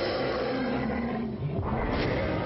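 Film sound effect of a dinosaur roaring, one long roar whose pitch slowly falls.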